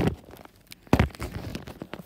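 Handling noise from a phone being moved about against fabric: a loud rustling bump at the start, another about a second in, then scattered small clicks and rustles.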